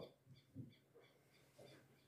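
Near silence: room tone, with one faint brief sound about half a second in.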